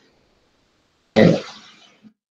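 A man briefly clears his throat about a second in, after a short silence.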